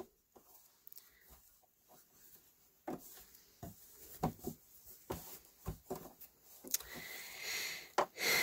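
Quilt fabric and binding being handled on a sewing machine bed: scattered soft rustles and light taps, then a longer sliding rustle near the end.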